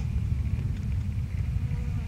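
Wind buffeting the microphone outdoors: a steady, uneven low rumble with no shot or impact.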